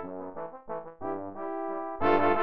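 Trombone quartet of three tenor trombones and a bass trombone playing a soft passage: a few short notes, then a chord held through the second half.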